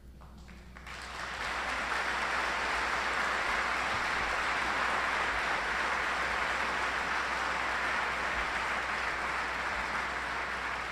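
Audience applauding. It starts about a second in, swells over the next second and then holds steady.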